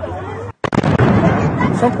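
Bang of Mexican cohetes (hand-launched skyrockets) a little over half a second in, with a rumbling haze of noise and people shouting. These are festival rockets, not gunshots.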